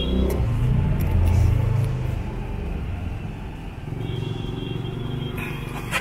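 A low rumble, strongest for the first two seconds, then settling into a softer, steady rumble.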